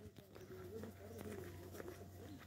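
Faint footsteps of a person walking on a paved road, with a faint, wavering distant voice in the background.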